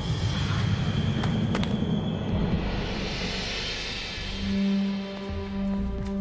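Tense film score: a low rumble with a couple of sharp clicks, a swelling hiss, then a steady low held tone from about four seconds in.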